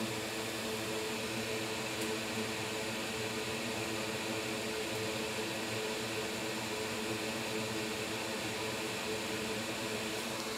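Steady fan hum with a low steady tone running through it, unchanging throughout.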